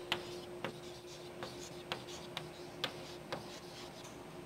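Chalk writing on a blackboard: a run of about eight sharp, irregular taps and short scratches as the chalk strikes and drags across the board.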